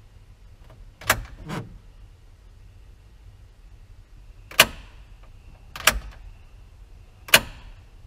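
Fuel tank selector push-button on a 1997 Ford F-350's dash being pressed, four sharp clicks a second or more apart, switching between the front and rear tanks with the ignition on. No fuse pops: the short that used to blow the selector valve's fuse is cured.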